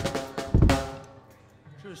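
Live rock drum kit struck a few times in the first second, kick and snare hits with a ringing tail that fades away.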